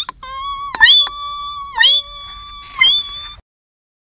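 A high, drawn-out voice crying "Ringgg!" three times about a second apart, imitating the ring of a steel hammer striking rock; each cry is held on one pitch and the sound cuts off suddenly near the end.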